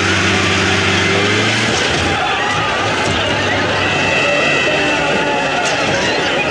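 A small van engine running hard at speed, a steady drone for about the first two seconds that then gives way to a rougher, noisier rush of engine and road noise.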